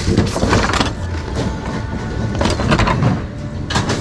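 Loud music from an overhead store loudspeaker, dense and boomy, with the clatter of junk being shifted around in a bin and a few sharp knocks.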